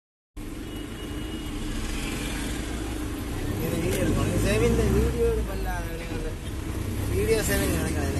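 Mahindra Bolero pickup driving, heard from inside the cab: a steady low drone of engine and road noise. A voice comes in over it in the middle and again near the end.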